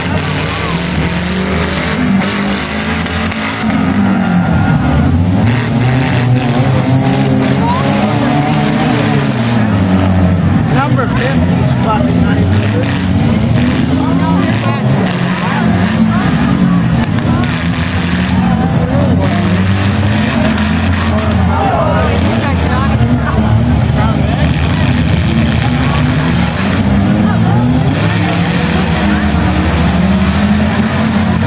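Several demolition derby cars' engines revving, their pitch rising and falling continually and overlapping.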